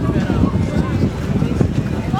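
Wind buffeting the microphone, a loud, uneven low rumble, over faint chatter of voices in a crowd.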